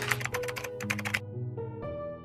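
Keyboard-typing sound effect, a fast run of about ten clicks a second that stops a little over a second in, over soft piano music with held notes.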